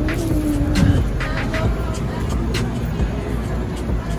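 Steady low rumble of outdoor background noise, with a short voice in the first second and a few light clicks.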